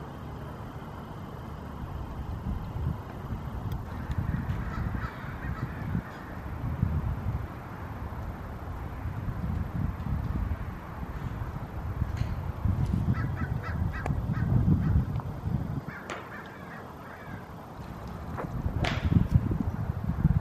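Outdoor ambience at a golf driving range: a gusty low rumble on the microphone, with a few sharp clicks of golf balls being struck. Birds call briefly, several short calls about two thirds of the way through.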